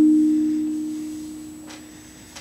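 A single note struck on a steel hand drum, ringing at one steady pitch and fading slowly over about two seconds.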